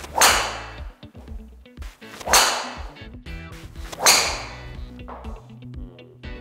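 Golf driver striking balls: three loud, sharp whacks about two seconds apart, each fading over about half a second, with a fainter fourth one near the end, over background music.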